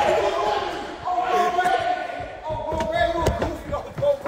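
Young men's voices shouting and carrying on in a room, with several sharp thuds, the loudest about three seconds in.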